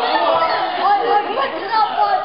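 Several young people's voices talking and chattering over one another, in a large hall.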